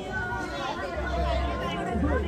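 A crowd of people talking over one another, several voices at once, with a low rumble coming in about halfway through.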